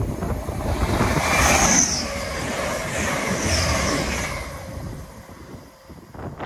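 Grand Central diesel passenger train passing at speed on the main line: a rush of wheel and engine noise that is loudest about one to two seconds in, then fades away as the train recedes.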